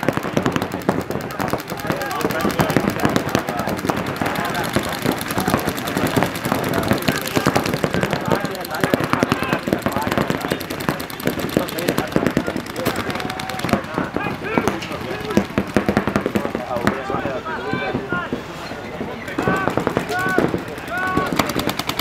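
Several paintball markers firing rapidly in long, overlapping strings of shots that make a near-continuous rattle. Players shout over the firing at times, more so in the second half.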